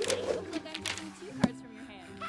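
Soft background music with short wordless vocal sounds and a few sharp taps, the loudest about one and a half seconds in.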